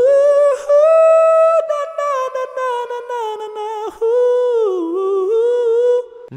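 A man singing a wordless vocal run on an 'ooh' into a Movo VSM-5 microphone with reverb added, as a sound test of the mic. One unbroken line of held notes that steps up early on, drifts slowly back down, dips lower about five seconds in and then comes back up.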